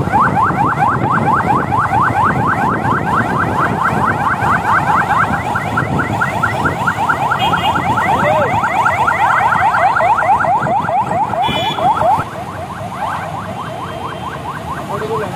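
Electronic siren on a motorcade's escort vehicle, sounding a fast, continuous series of short rising sweeps several times a second, which stops abruptly about 12 seconds in. Traffic and engine noise runs underneath.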